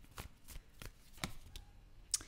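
A deck of tarot cards being handled and shuffled in the hands: about five faint, sharp card clicks.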